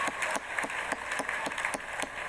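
A crowd applauding, with sharp hand claps standing out in a quick, fairly even beat.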